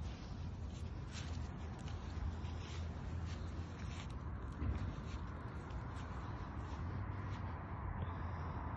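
Faint rustling and light ticks of a poodle stepping and sniffing through dry grass on a leash, over a low steady rumble, with one slightly louder tick near the middle; no whining is heard.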